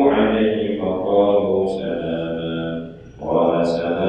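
A man's voice chanting a recitation in a slow, melodic sing-song through a microphone, in long held phrases, with a short breath pause about three seconds in.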